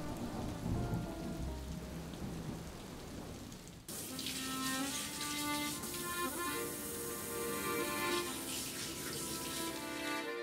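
Steady rain with low thunder rumbles for about four seconds, then an abrupt cut to music with sustained notes.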